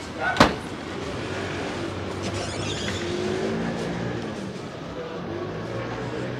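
A car driving past on a brick street, its tyre and engine noise swelling to a peak midway and easing off again. A single sharp click sounds about half a second in, and faint voices can be heard.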